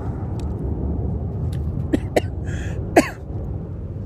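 Steady low rumble of a passing airplane. A man clears his throat with a few short coughs between about two and three seconds in, the last the loudest.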